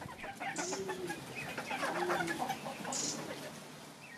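Chabo bantam chickens clucking softly, a few short low calls.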